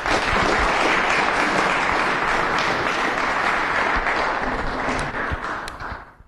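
Audience applauding in a hall: dense clapping that starts at once, holds steady for several seconds and dies away near the end.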